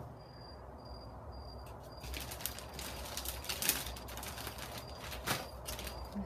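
Hands handling small carved rosewood pendants and wooden beads and setting them out on a cloth: rustling with light clicks and knocks from about two seconds in, the sharpest near the middle.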